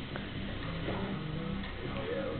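Music from a television in the room, with a steady ticking beat and sustained low tones.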